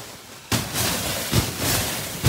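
Snow sliding off a netted tunnel as the netting is pushed up from underneath: a sudden rush of sliding, rustling noise about half a second in, with a few soft knocks.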